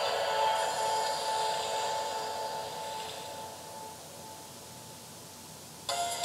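Music from a video playing through a laptop's small speakers, fading out gradually over several seconds to a faint hiss. A louder sound starts again right at the end.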